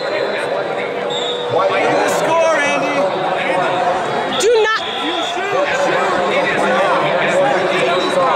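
Indistinct chatter of many voices echoing in a large sports hall, with a few short thuds.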